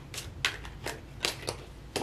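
Tarot cards being shuffled by hand, with about six crisp, separate snaps of the cards.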